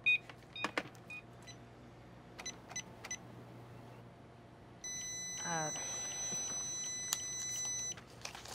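Checkout register sounds: a few short electronic beeps and clicks in the first three seconds, then a steady high electronic tone from about five seconds in, with a brief rising whir under it just after it starts.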